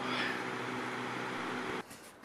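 Steady outdoor background noise with a faint low hum, which cuts off shortly before the end to quieter room tone.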